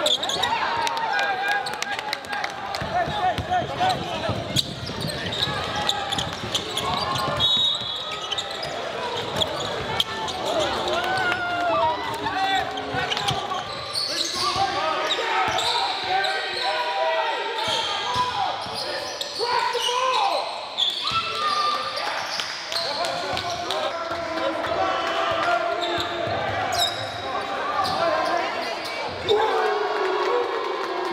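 Live game sound in a gymnasium: a basketball dribbling and bouncing on the hardwood floor amid the shouts and chatter of players, coaches and spectators.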